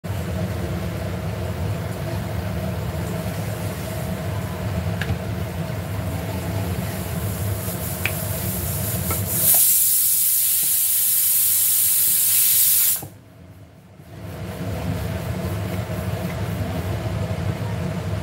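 Pressure cooker on the gas stove letting off steam in a loud hiss for about three and a half seconds, starting about halfway through and cutting off suddenly, over a steady low kitchen hum with a few faint clicks.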